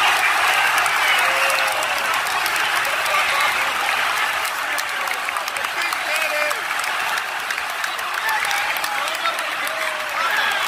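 Football stadium crowd cheering and shouting in goal celebration, many voices yelling at once in a continuous roar that eases slightly over the seconds.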